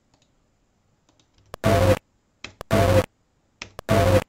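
A few mouse clicks, then a short snippet of a noisy ITC recording played back three times. Each play is a loud burst of hiss and buzz under half a second long, which is heard as the word "Alex".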